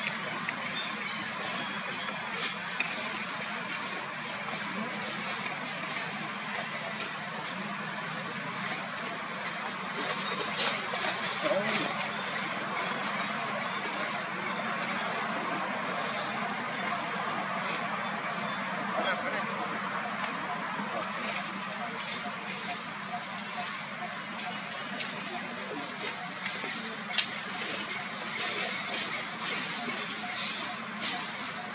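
Steady outdoor background noise with indistinct, unintelligible voices and a few sharp clicks.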